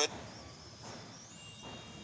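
Faint background ambience of a live cricket broadcast in a gap between commentary, with a thin high tone that slowly rises in pitch.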